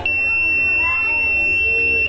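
Arduino-driven buzzer sounding one steady high-pitched tone for about two seconds, then cutting off: the alarm signal given after the seven-segment display counts to three.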